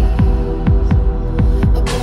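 Instrumental deep house electronic dance music: a steady, regular kick drum under held synth chords, with a brief hissing swell near the end.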